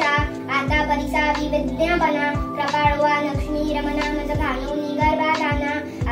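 A young girl chanting a Marathi devotional hymn in a sing-song melody, her voice running almost without a break, over a steady droning musical accompaniment.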